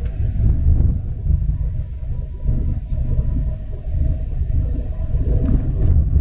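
Cabin noise of a manual car under way: a low, uneven rumble of engine and tyres on the road, with a faint thin whine through the middle seconds.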